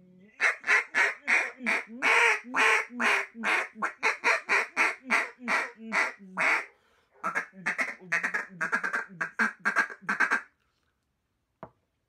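Wooden RNT Daisy Cutter mallard duck call blown by mouth: a long string of loud quacks at about three a second, then after a short pause a quicker run of shorter quacks. A single click near the end.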